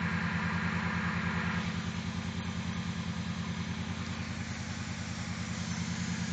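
2002 Chrysler Concorde's 2.7-litre DOHC 24-valve V6 idling rough, with a steady, fast pulsing beat. The owner puts the rough idle down to a major vacuum leak left by his own earlier disassembly, with bolts not torqued down and some left out.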